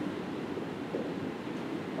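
Room tone: a steady, faint hiss and hum of a lecture room, with no distinct event.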